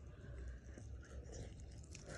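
Faint eating sounds: fried fish being picked apart by fingers and chewed, with small scattered crackles.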